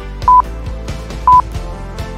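Short, loud electronic beeps at one steady pitch, one a second, twice, over background music with a steady beat.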